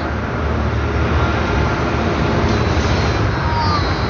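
Steady low rumbling background noise with a hiss on top, and faint voices in the second half.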